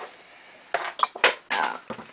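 Handling of a cardboard LEGO set box close to the microphone: about five short clicks and knocks with a light clink, bunched in the second half.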